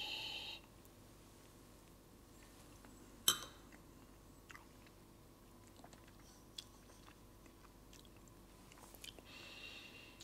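A man nosing a glass of whisky with a faint sniff, then quiet mouth sounds as he tastes a sip. One short, sharp click about three seconds in.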